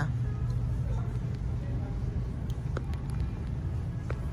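Steady low hum of a shop's background noise, with a few faint clicks and ticks.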